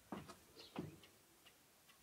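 Faint footsteps on an earthen floor, two soft steps in the first second and then near quiet.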